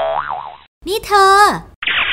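Comic cartoon sound effect, a boing-like tone whose pitch wavers up and down for about half a second.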